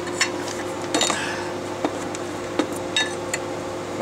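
Metal hand tools and a spanner clinking against an engine's cooling fan and pulley: about half a dozen scattered sharp clinks.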